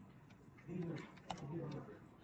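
Computer keyboard typing, a few scattered key clicks. In the middle, a louder low, voice-like cooing sound from an unseen source lies over them.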